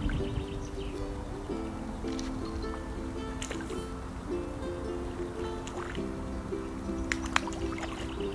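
Background music of held chords changing every second or so, with a few brief sharp clicks, the loudest about seven seconds in.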